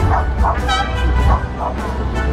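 A dog barking several times in quick short barks, over music and crowd chatter.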